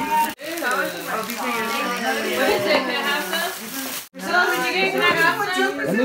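Several people talking over one another in a room, a mix of overlapping voices, cut off sharply and briefly twice, about a third of a second in and about four seconds in.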